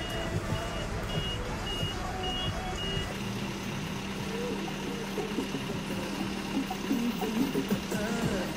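A bus's warning beeper going about twice a second, stopping about three seconds in, over the bus's running engine. After that a steady low engine hum continues, with men's voices talking over it near the end.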